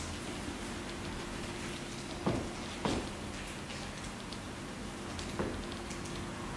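A room's steady low hum, broken by three short, light knocks about two, three and five and a half seconds in.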